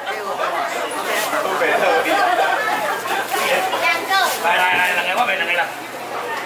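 A crowd of people talking over one another, with one voice wavering up and down about four seconds in.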